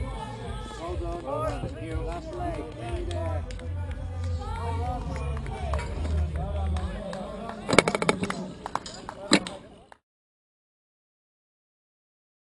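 Indistinct voices chattering over a low, intermittent rumble. A quick run of sharp clacks comes about eight seconds in and another just after nine, then the sound cuts out completely about ten seconds in.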